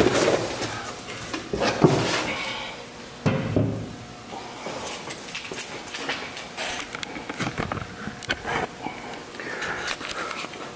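A steel air tank being handled and set down on a tabletop: a sharp knock about two seconds in, then a heavier knock a second or so later, followed by light scattered clicks and rustling.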